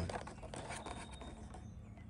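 Faint rubbing and scratching as a cardboard-and-plastic blister pack is handled and turned in the hands.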